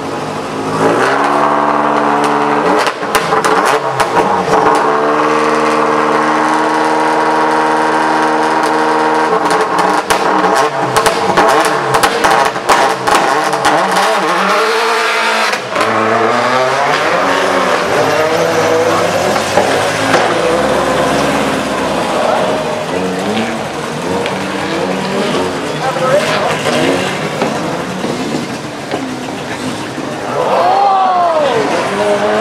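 Subaru Impreza WRC rally car's turbocharged flat-four engine held at high revs for several seconds, then a run of sharp cracks, then the engine rising and falling in pitch again and again as the car accelerates away through the gears.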